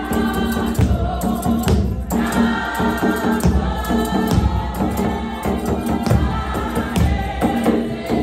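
A mixed choir of men and women singing an isiXhosa gospel hymn in harmony, loud and steady, with two hand drums and a tambourine keeping the beat.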